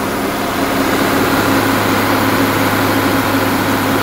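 John Deere 4440 tractor's straight-six diesel engine running at a steady, unchanging speed, as it does when driving a grain auger.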